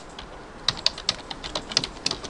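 Computer keyboard being typed on: a quick, uneven run of key clicks starting about two thirds of a second in.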